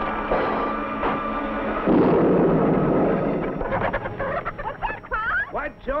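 Cartoon crash sound effect of a flying saucer smashing down through a barn roof. A busy, steady sound with held tones comes first. About two seconds in, a loud burst of crashing noise begins and lasts over a second. It is followed by a run of short, quickly rising-and-falling calls.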